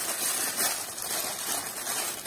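Plastic packaging crinkling and rustling as it is handled, a steady rustle without distinct knocks.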